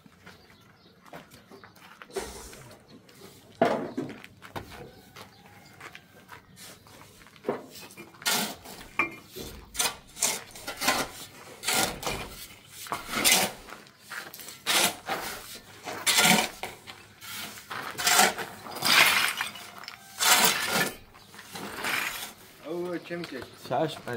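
A run of irregular knocks and clinks, like hard objects or kitchenware being handled, sparse at first and coming thick and fast through the second half. A voice speaks near the end.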